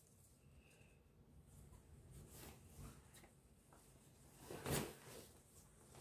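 Faint rustling of wax-print cotton fabric being handled on a table, with one short louder rustle near the end.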